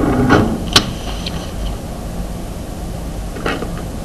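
Desk handling noise while a marker is hunted for: a single sharp click a little under a second in, then quieter handling over a steady low hum.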